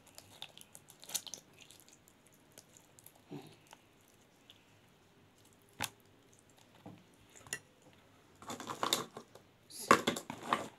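Quiet, scattered handling sounds of hands packing rice filling into a zucchini over a plastic bowl: soft squishes and rustles. There is a single sharp click about six seconds in, and a busier patch of handling near the end.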